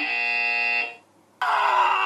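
A harsh, flat buzzer sound effect held for just under a second, then cut off. After a short gap comes a second, briefer sound that falls slightly in pitch.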